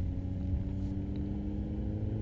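Steady low road and engine rumble heard inside a car cruising along a highway, with a faint even hum over it.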